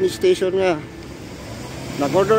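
A man's voice speaks briefly at the start, then the steady noise of city street traffic takes over.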